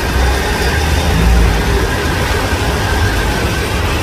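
Heavy rain pouring down on a busy street, with auto-rickshaw engines running close by as traffic moves past. A steady low rumble sits under the rain.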